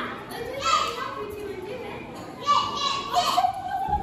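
Children's voices speaking and calling out loudly, in two spells: a short one under a second in and a longer one from about two and a half seconds in.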